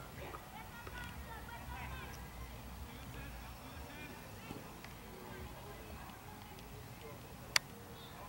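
Faint, distant voices of people talking across an open playing field, with one sharp click near the end.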